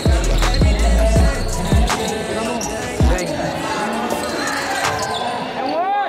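Hip-hop track with a heavy booming bass beat and rapped vocals; the bass drops out briefly near the end.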